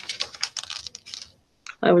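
Typing on a computer keyboard: a quick, dense run of key clicks lasting about a second, then stopping.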